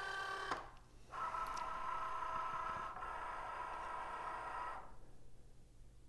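Cricut Joy's motors drawing the insert card mat into the machine: a brief whine, a short pause, then a steady whine of several pitches for about four seconds that stops near the end.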